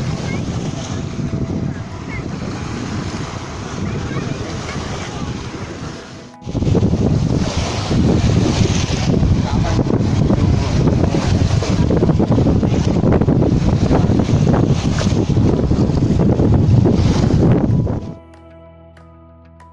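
Wind rushing on a phone microphone together with surf on the shore. The sound drops out briefly about six seconds in and comes back louder.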